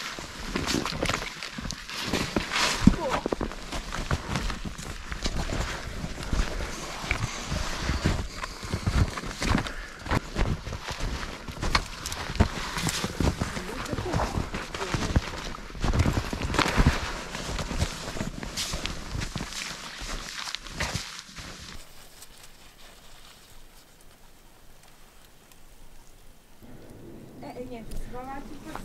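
Footsteps crunching in snow, with conifer branches rustling and scraping against clothing and pack as hikers push through fallen, snow-laden fir trees. A dense run of sharp crunches and brushing sounds thins out and goes much quieter about 22 seconds in.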